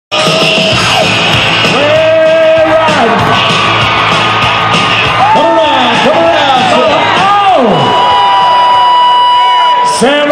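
Loud music mixed with a crowd yelling and whooping during a bull ride.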